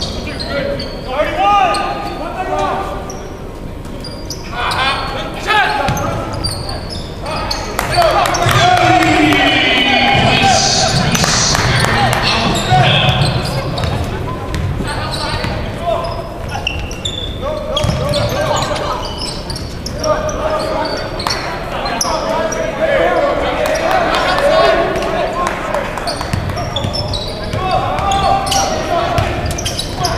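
Live basketball play in a large, echoing gym: the ball bouncing on the hardwood court, with players and spectators calling out throughout.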